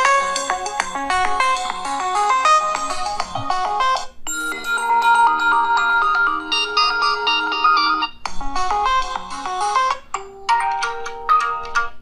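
Ringtone melodies played through the Oppo Reno 7 5G's single bottom loudspeaker, switching to a different tune about four seconds in, again at about eight seconds and near ten seconds. The sound is loud but a little muffled, "coming from a cave", and mono rather than stereo.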